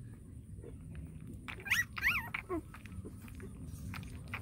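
Young puppy giving two short, high-pitched whimpers close together about halfway through, each bending up and down in pitch.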